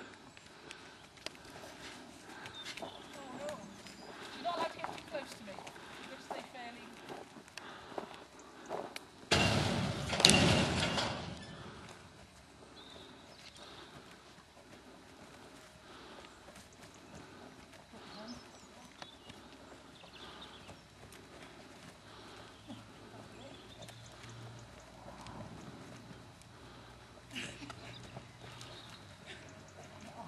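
Faint hoofbeats and movement of a cutting horse working cattle in an arena, with low voices in the background. About nine seconds in comes a loud rush of noise lasting about two seconds.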